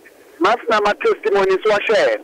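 Speech only: a voice talking on a radio broadcast, starting about half a second in, thin-sounding with no bass.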